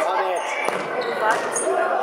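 Indoor football kicked and knocking off the hard sports-hall floor and players a few times, the knocks echoing in the large hall, with children's voices calling.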